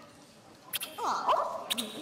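A person's voice giving a short sliding, whine-like exclamation about a second in, preceded by a couple of sharp clicks.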